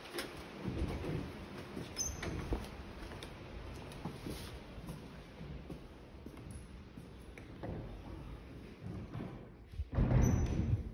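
A heavy wooden front door being opened, with a few clicks and knocks, then scattered footsteps on a stone floor over a low rumble.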